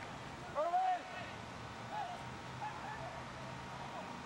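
A few faint, distant shouted voices over steady background noise with a low hum.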